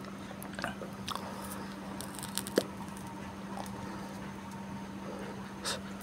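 Soldering iron working at a phone battery's protection board, bridging the spot where the fuse was removed: a few faint, scattered small clicks and crackles, the sharpest about two and a half seconds in, over a steady low hum.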